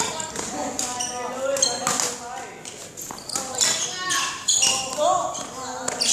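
A badminton player's shoes stepping and squeaking on a hard hall floor during shadow footwork, in many quick uneven strokes, over voices talking in the background.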